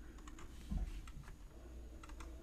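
Faint, scattered clicks of a computer keyboard, with a soft low thump about three-quarters of a second in.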